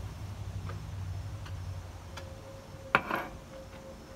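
A ceramic coffee mug is set down on a tiled tabletop with one sharp clack about three seconds in, over a low rumble that fades out about halfway through.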